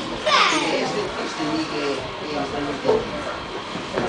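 Children's voices chattering together, with one child's high-pitched call falling in pitch just after the start.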